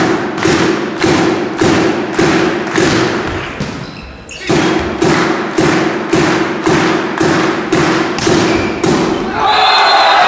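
A drum beaten in a steady rhythm, about two thumps a second, with a short break about four seconds in. Shouting voices rise near the end.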